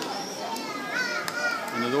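High, short chirping calls of birds flying overhead, with voices of people in the background.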